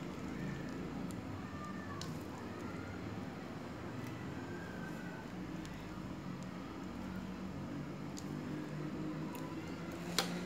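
Faint clicks of a metal spoon as balls of meatball dough are cut from the hand and dropped into a pot of hot water, over a steady low hum.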